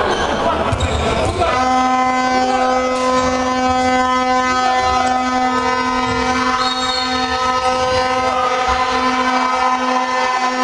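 A horn sounds one long, steady, held note starting about a second and a half in, over crowd voices and the bounce of the ball on the court.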